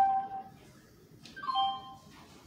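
A small bell struck twice, about a second and a half apart; each ring is short and dies away quickly.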